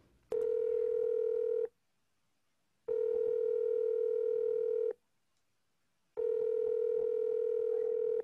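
Telephone ringback tone: three long, steady rings of one buzzy tone, each lasting a second and a half to two seconds, with pauses between. The call is being put through to an extension that nobody answers.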